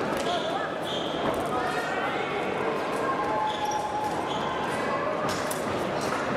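Crowd murmur and distant voices echoing in a large hall, with short squeaks and light taps of fencing shoes on the piste as the épée fencers shift their footwork.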